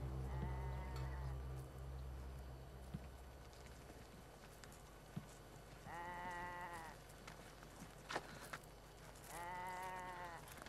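Sheep bleating three times, each call about a second long and steady in pitch: a faint one near the start, then two louder ones about six and nine seconds in. A few soft knocks fall between the calls.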